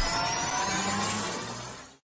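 Electronic sound effect from an intro countdown: a rising swoosh with several climbing tones, fading away and cutting off at the end.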